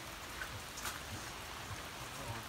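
Steady rain falling on and around pop-up tent canopies, an even hiss of drops.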